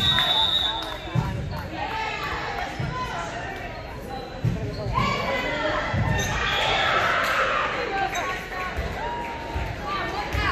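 Girls' voices calling and chatting, echoing in a gymnasium, with a few scattered thuds of a volleyball bouncing on the hardwood floor between rallies.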